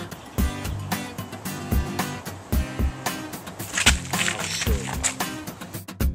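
Background music with a steady drum beat and bass line.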